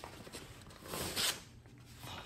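A sheet of paper being picked up and handled, rustling, with one short swish about a second in.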